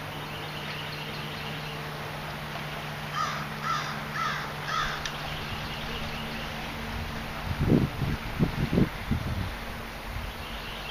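A bird gives four short calls about half a second apart, a few seconds in, over a steady low hum. Near the end come several loud, low thumps.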